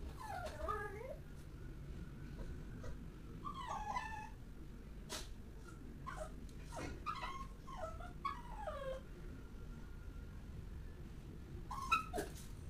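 A dog whimpering and whining in repeated bouts of short cries that fall in pitch, with a single sharp click in the middle.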